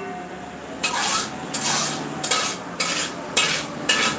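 A metal utensil scraping against a metal pot or bowl in repeated strokes, about two a second, starting about a second in.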